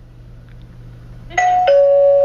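Two-tone doorbell chime, ding-dong, about one and a half seconds in: a higher note followed by a lower one that rings on.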